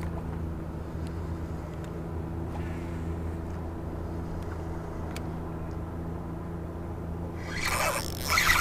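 A boat motor running with a steady low hum, with a few faint clicks from a spinning reel being cranked. Near the end comes a rising rush of rubbing noise as clothing brushes against the microphone.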